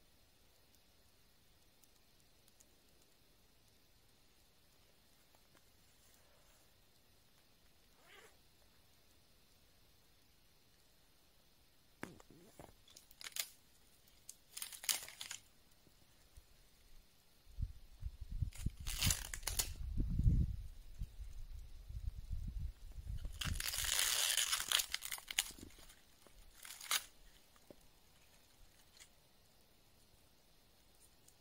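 Hands breaking dry twigs and crumpling birch bark while kindling a small fire in snow: after about twelve quiet seconds, a run of sharp snaps, crinkles and tearing sounds, with low thumps in the middle and a longer crinkling stretch near the end.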